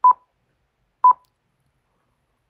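Two short electronic beeps of the same pitch, about a second apart.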